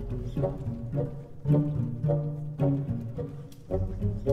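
Music led by low strings, cello and double bass with plucked notes, playing a short repeated rhythmic figure.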